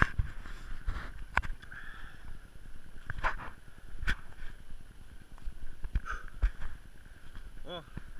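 Footsteps on packed snow, irregular crunches about half a second to a second apart. A man says a short 'O' near the end.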